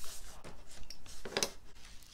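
Sheets of paper and card stock rustling and scraping under hands as they are smoothed and lifted, with a sharper crackle about one and a half seconds in.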